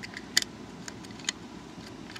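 A few small clicks and taps from metal alligator-clip test leads being handled on a circuit board, the sharpest about a third of a second in, over a low steady hiss.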